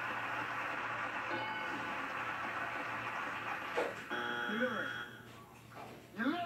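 Studio audience laughing and applauding, heard through a television speaker, dying away about five seconds in. A short pitched call comes just before it fades.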